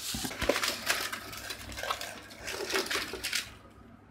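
Shredded crinkle-paper packing rustling and crackling as hands rummage through it in a cardboard box, with a few small knocks as items are handled. The rustle dies down near the end.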